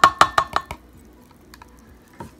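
A plastic measuring cup knocking against the rim of an Anchor Hocking glass measuring cup after a pour: about half a dozen quick clinks with a short ring in the first second, then quiet room tone.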